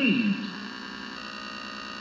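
RCA Strato World tube radio's speaker as the dial is tuned between stations: a brief falling whistle as a station slides out of tune, then steady static with a faint hum.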